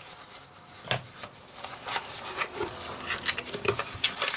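Narrow cardboard box being handled and opened: a knock about a second in, then crackling and rustling of the cardboard flaps and the brown-paper wrapping inside.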